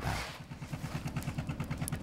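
A fishing boat's engine idling with a fast, even low chugging. It opens with a brief rustling rush as a load of shrimp slides into a plastic crate.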